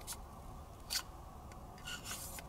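Faint handling noises: three short scrapes and rustles, the loudest about a second in, as a cotton cleaning patch on a jag and cleaning rod is fitted into the chamber end of a pistol barrel.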